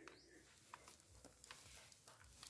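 Near silence, with a few faint crackles from dry roots and potting soil being worked through by hand.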